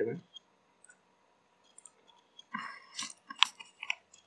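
Computer mouse clicks while working in CAD software: a few soft clicks and one sharp click a little over three seconds in, after a quiet pause.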